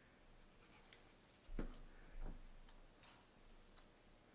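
Two soft thumps on the craft table a little over half a second apart as a liquid glue bottle is set down and glued paper is pressed onto a cardstock box, with a few faint light ticks of paper handling.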